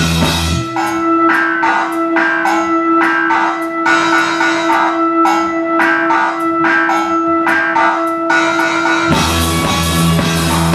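Live instrumental rock band. About half a second in, the bass and low end drop out, leaving one steady held note over a regular pattern of sharp drum and cymbal hits. The full band with bass comes back in a little after nine seconds.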